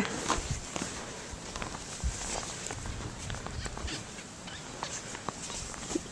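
Snow crunching and scraping as a snow shovel is pushed through deep fresh snow and boots tread in it: soft, irregular crunches with a low rumble underneath.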